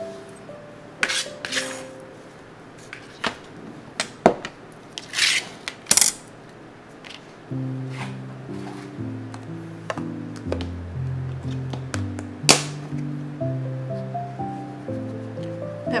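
Scattered knocks and clinks of a kitchen knife on a plastic cutting board while green onions are chopped. About halfway in, background music with a stepping bass line starts and carries on, with one more sharp knock under it.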